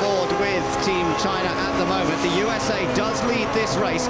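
Indistinct, overlapping voices with a steady tone running underneath.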